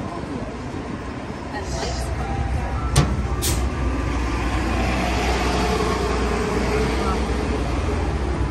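City street traffic with a bus running nearby: a steady low engine rumble, a sharp click about three seconds in followed by a brief hiss, then the engine noise grows fuller and louder for the rest of the time.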